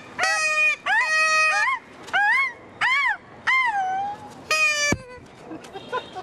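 A series of about seven shrill, nasal, honking cries of about half a second each. The first few hold one high pitch and the later ones rise and fall.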